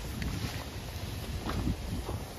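Wind rumbling on the microphone, a steady low buffeting, with faint street noise behind it.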